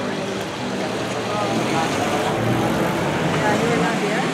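Street traffic noise with a car driving past close by, growing louder over the second half, under indistinct voices.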